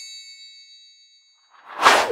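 End-card transition sound effects: a bright metallic ding rings out and fades away over about the first second, then a whoosh swells up near the end as the card changes.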